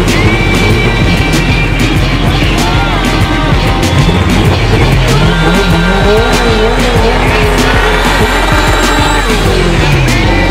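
Front-wheel-drive Honda Civic drag car doing a burnout: the engine revs up and the front tyres squeal as they spin in smoke, under loud background music.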